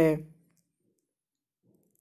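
A voice finishing a spoken word, then near silence with a couple of very faint short clicks.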